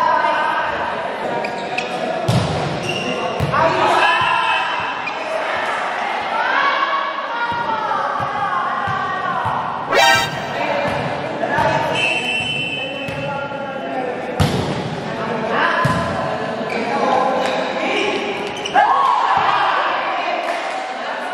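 Volleyball being struck and bouncing on the indoor court, a few sharp knocks echoing in a large hall, under the shouts and chatter of players and spectators.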